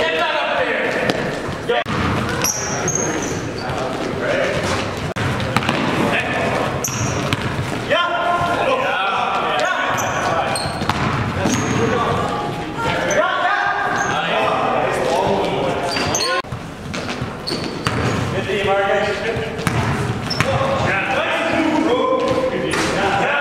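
Live basketball play in a large, echoing gym: the ball bouncing on the hardwood, brief high sneaker squeaks, and players' voices calling out on court.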